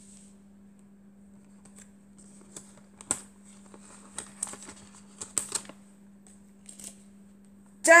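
Laminated picture cards being pulled off and repositioned on a laminated board: a few seconds of irregular crackles and clicks, loudest about three and five seconds in, over a low steady hum. A woman's voice starts reading right at the end.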